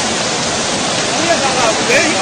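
Floodwater rushing across a road in a loud, steady torrent, with faint voices near the end.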